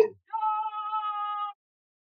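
A female voice sings one steady held note of a commercial jingle for just over a second, then cuts off abruptly into silence.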